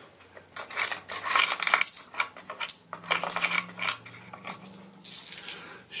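Coins clinking and rattling in the birdhouse's wooden donation box as it is handled, in a few jingling bursts with pauses between them.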